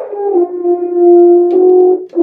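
A French horn played by a first-time player: one long held note that wavers at the attack, settles, and then steps slightly higher about one and a half seconds in.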